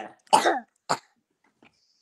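A man coughing: one loud cough, then a shorter one about a second in.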